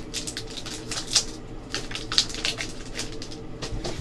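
Foil and plastic card-pack wrapping crinkling and rustling, with a hard plastic graded-card slab clicking as it is handled, in irregular crackles and taps; the sharpest comes about a second in. A low steady hum runs underneath.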